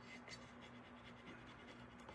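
Very faint scratching of fingertips rubbing a rub-on transfer's paper against a painted tray, in short irregular strokes over a low steady hum.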